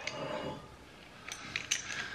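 Faint handling noise from an old metal corkscrew-and-pliers opener holding a pulled cork: low room hush at first, then a few light clicks in the second half as the tool and cork are handled.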